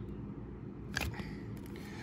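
A sleeved trading card slid into a rigid plastic toploader, with a short plastic click and rustle about a second in, over a low steady background hum.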